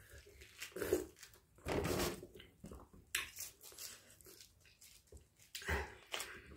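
Hands peeling mandarin oranges, the rind tearing and the skin rustling in short, irregular bursts.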